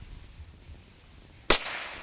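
An M-60 firecracker goes off in a single sharp pop about one and a half seconds in, with a short fading tail, and no crackling.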